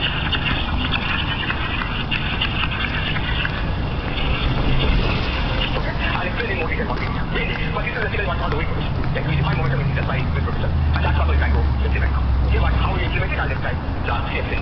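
City street ambience: indistinct chatter of passers-by over a steady traffic rumble. A deeper rumble swells between about ten and thirteen seconds in.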